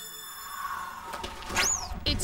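Cartoon sound effect: a whistling swoop that rises sharply in pitch and falls again, about a second and a half in, as a winged character flies in to land. Before it, faint background music fades out.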